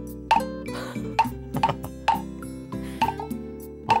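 Moktak, a Korean wooden temple block, struck with a stick in a steady beat of about two knocks a second, over background music.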